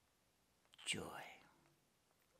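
Speech only: a man says one word, "joy", about a second in, and it fades out. The rest is near silence.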